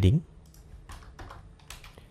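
A few scattered keystrokes on a computer keyboard, typing.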